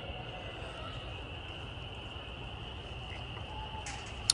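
A chorus of frogs calling without a break, heard as a faint, steady high-pitched drone.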